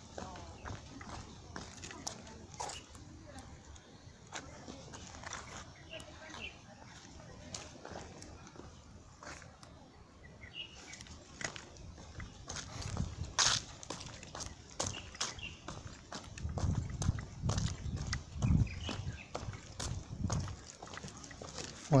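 Outdoor ambience of people walking: faint, indistinct voices in the distance and scattered footstep clicks on a paved walkway. Irregular bursts of low rumble come in the last several seconds.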